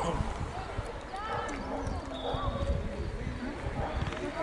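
Distant shouts and calls from football players and onlookers, over a low rumble.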